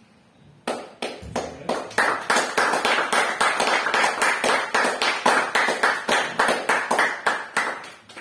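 Small audience applauding: a few separate claps begin about a second in and build quickly into full, dense applause, easing off near the end.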